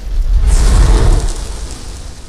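Loud fiery whoosh sound effect: a deep rumble with a hiss over it, swelling over the first second and fading away over the next.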